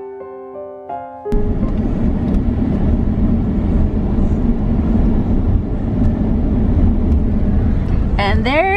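Piano music for about the first second, cutting off suddenly into steady road and engine noise of a moving car, heard from inside the cabin.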